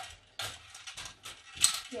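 A plastic Connect 4 counter dropped into the top of the upright grid, clattering down its column. It comes as a run of short rattles, with the loudest, sharpest clack about a second and a half in.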